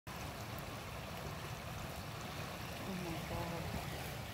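Steady rushing noise of running water, with a faint low voice murmuring near the end.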